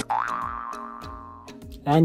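Loud electronic music cuts off, and a ringing pitched sound effect follows. It slides up and back down near the start and fades away over about a second and a half, with a few light clicks, as on an animated subscribe button. A man starts speaking near the end.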